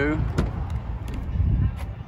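Uneven low wind rumble on the microphone, with a single sharp click about half a second in as the Ford Edge's rear door latch releases and the door is opened.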